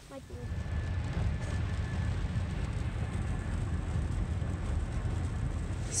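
Steady low road rumble inside the cabin of a moving car.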